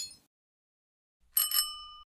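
Bell-ding sound effect of a subscribe-button animation: two quick bell strikes about a second and a half in, ringing briefly before cutting off. A bright clink fades out at the very start.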